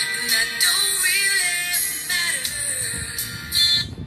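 A song with a singing voice played through a horn compression-driver tweeter wired with a 3.3 µF series capacitor, which cuts the bass and leaves a thin, treble-heavy sound.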